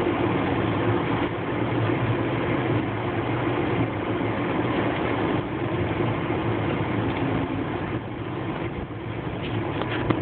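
Vehicle engine running and tyres rolling on a dirt road, a steady rumble of road noise that eases slightly near the end.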